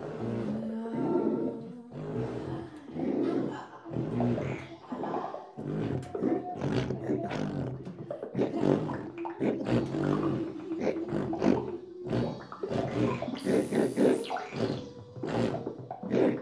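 Woman improvising with her voice close on a handheld microphone, in short broken phrases of low, rough vocal sounds rather than words. A brief thin, high steady tone sounds a little before the end.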